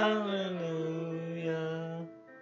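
A man singing one long held note into a handheld microphone; the pitch drops a little over the first half second, then holds steady.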